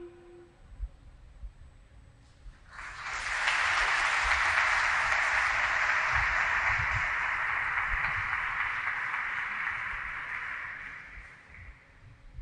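Applause that starts suddenly about three seconds in after a short lull, holds steady, and fades away near the end.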